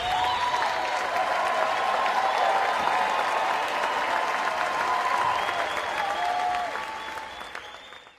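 A theatre audience applauding and cheering, dense clapping with raised voices over it, fading out near the end.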